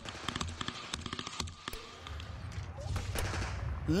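Gunfire from combat footage: a quick run of sharp cracks through the first half, followed by a low rumble near the end.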